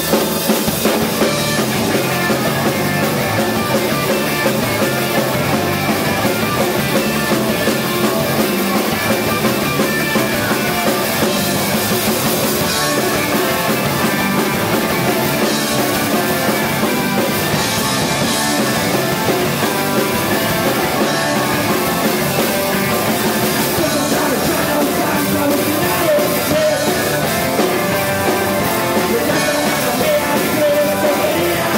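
Live garage rock band playing loud and steady: electric guitar, bass guitar and a Pearl drum kit, with some singing.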